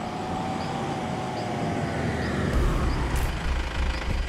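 Mahindra Scorpio SUV approaching and pulling up, its engine and tyre noise growing steadily louder, with a deeper rumble coming in after about two and a half seconds.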